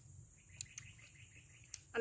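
Faint bird chirping: a quick run of small high notes from about half a second in until near the end, with a few soft clicks.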